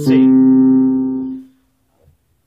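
Digital piano sounding the final low C of a descending C major scale, one held note that rings for about a second and a half and then stops suddenly as the key is released. A spoken "C" is heard at the start of the note.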